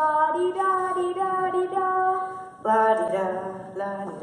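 A young performer's voice singing long held notes, with a louder new phrase starting about two and a half seconds in.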